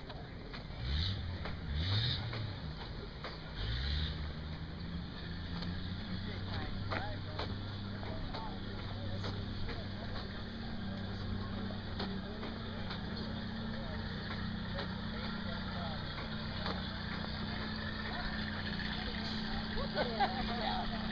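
A motor vehicle engine revs up twice in quick rising sweeps, then picks up once more and runs on at a steady pitch.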